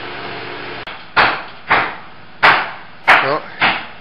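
Hammer blows on nails, five strikes a little over half a second apart, from stucco workers nailing chicken-wire lath onto the house. A steady background hum breaks off just before the first blow.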